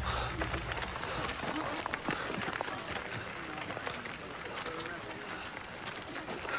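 A crowd's scattered voices over many footsteps and shuffling on a dirt path, with low music dying away at the start.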